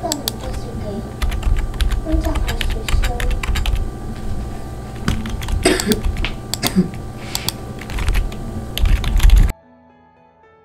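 Computer keyboard typing and clicking, a quick uneven string of sharp clicks over a low rumble, with a laugh in the background a few seconds in. It cuts off suddenly near the end.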